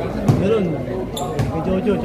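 A basketball bouncing a few times on the court floor, sharp thuds among players and spectators talking and calling out.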